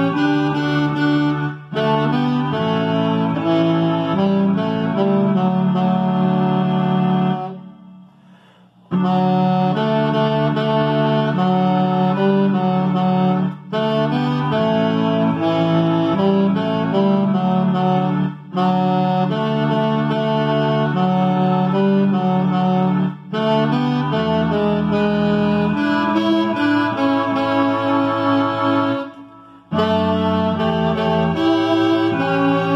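Alto saxophone playing the tenor part of a slow hymn: held notes in phrases of about five seconds, each broken by a short breath, with a longer pause about eight seconds in.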